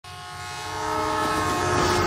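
A train horn blowing one long chord of several steady tones, swelling up from quiet and holding steady from about a second in.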